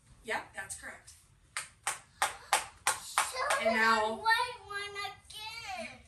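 Five quick, evenly spaced sharp taps in a row, followed by young children's voices talking.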